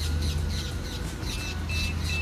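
Birds chirping over and over, over a low wind rumble on the microphone. Three short, evenly spaced high beeps come in the second half.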